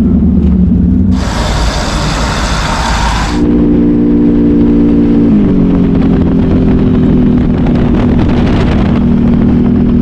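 Can-Am Renegade XMR 1000R ATV's V-twin engine running. A loud rush of noise lasts about two seconds early on. Then the engine pulls steadily on the road, its pitch steps down a little past halfway, and it runs steady after that.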